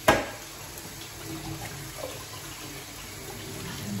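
Kitchen tap running into a bowl of cut broccoli and cauliflower in the sink as the vegetables are rinsed, a steady splashing. A single sharp knock at the very start is the loudest sound.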